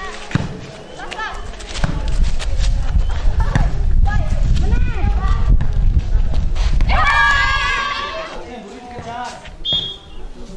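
Girls calling and shouting during a volleyball game, with thuds of the ball being struck. A louder burst of shouting comes about seven seconds in.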